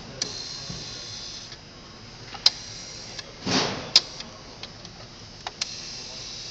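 Rotary telephone dial being turned by hand and let go: a handful of sharp clicks and, about halfway through, a brief whir as the finger wheel spins back.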